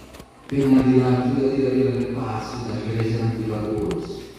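A man's voice over a microphone and loudspeakers, drawn out in one long chant-like tone that starts about half a second in and is held with little change to the end.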